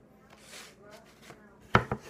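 Heavy knife with an 8-inch, quarter-inch-thick blade (McCullen S7 Camp Bowie) striking a wooden cutting board while chopping red potatoes: one sharp knock with a quick second tap near the end, after a stretch of quiet handling.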